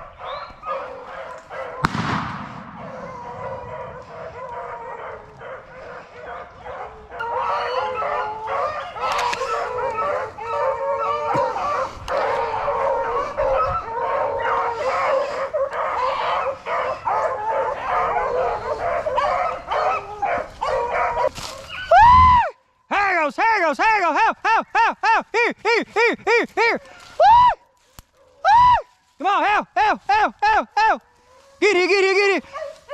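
A pack of hounds running a rabbit, many dogs baying over one another, swelling about seven seconds in. A single sharp bang comes about two seconds in. Near the end one dog barks close by in quick repeated calls.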